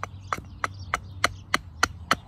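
Small Ozark Trail hatchet chopping a birch spoon blank: light, quick strokes, about three a second, each a sharp wooden chop as the blank is roughed out.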